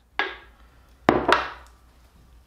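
Knocks as a metal can of resin is handled and set down on plywood: a softer knock just after the start, then two sharp knocks close together about a second in.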